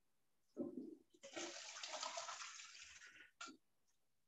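A short burst about half a second in, then about two seconds of rushing noise that fades away, and a brief knock-like burst near the end, heard faintly through video-call audio.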